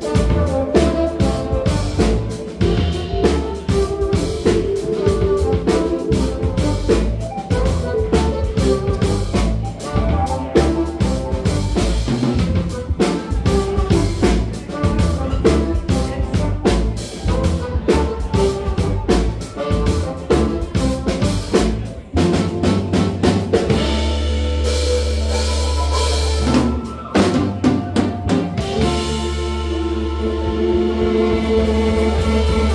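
Live funk band playing: drum kit, electric guitar, keyboard and trumpets over a bass line, with busy drumming throughout. Near the end the drumming thins out for about three seconds under one long held low note, then the full groove comes back.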